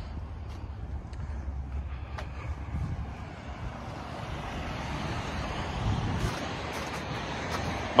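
Passing road traffic, a steady hiss that swells a little past the middle, over a low rumble of wind on the microphone.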